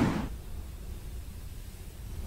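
The loud music fades out sharply in the first moment, leaving a steady, faint, low rumble of beach ambience: wind buffeting the microphone and small waves breaking on the shore.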